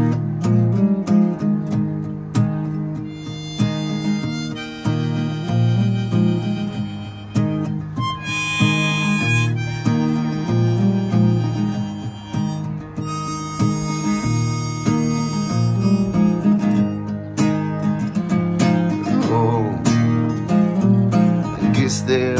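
Harmonica solo, played from a neck rack, over strummed acoustic guitar chords in an instrumental break.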